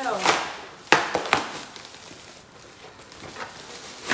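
Frozen-solid T-shirts being pried and pulled apart by hand, the ice-stiffened fabric cracking and crunching, with three sharp cracks about a second in.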